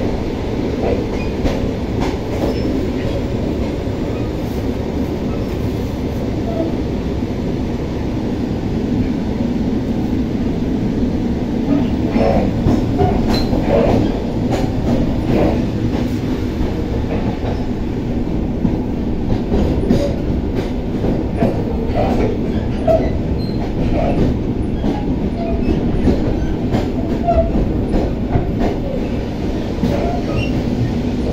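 ER2R electric multiple unit heard from inside its door vestibule while running along the track: a steady loud rumble of wheels on rail with rattling. Scattered clicks and knocks grow more frequent about halfway through.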